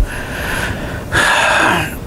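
A man's breathing close to the microphone: two noisy, unpitched breaths, the second louder.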